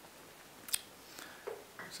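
Quiet room tone in a pause in a man's lecture, broken by one brief sharp mouth click about a third of the way in and a few faint mouth sounds just before he speaks again.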